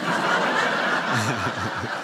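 Audience laughing together, a steady wash of many people's laughter, with a few deeper individual laughs standing out about a second in.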